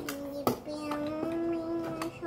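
A child singing one long held note that rises slightly in pitch, with a short sharp click just before it.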